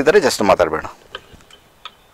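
A man speaking for about the first second, then a few faint, sharp clicks about a third of a second apart.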